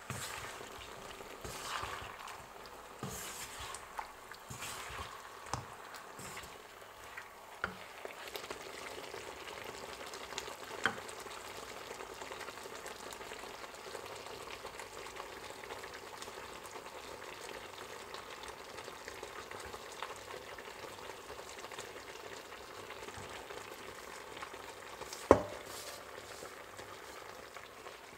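Shrimp, vegetables and sauce frying in a nonstick frying pan: a steady sizzle throughout. A wooden spatula stirs and taps against the pan in the first several seconds, and a single sharp knock stands out near the end.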